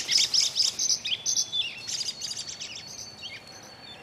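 Birds chirping in quick runs of short high notes, several a second, growing fainter toward the end, with a thin steady high whistle in the second half.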